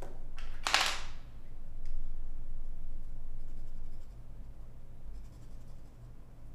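A drawing pen scratching on paper, with one short, louder scratch about a second in and only faint scratches after it. A low, steady hum runs underneath.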